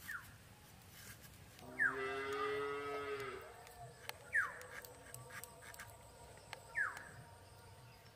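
A cow moos once, a single call of under two seconds that starts about two seconds in. Short falling chirps repeat about four times, with a few faint clicks.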